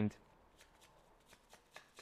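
Faint, irregular ticks and soft rustles of tarot cards being handled and slid across a tabletop.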